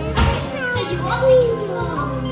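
Children's voices talking and exclaiming over steady background music.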